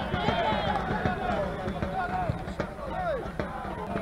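Outdoor football-ground background: faint, distant voices shouting on the pitch over a steady outdoor noise.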